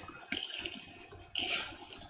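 A tobacco pipe being lit with a lighter: a few soft, breathy puffs as the smoker draws on the stem to pull the flame into the bowl, faint against the quiet.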